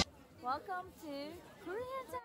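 Background music cuts off abruptly, leaving a few short, faint high-pitched calls that slide up and down in pitch.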